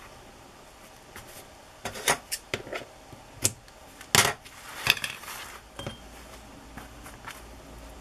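A run of short taps and knocks, the loudest about four seconds in, with a brief rustle after it: a hardback book cover and craft supplies being handled and set down on a cutting mat.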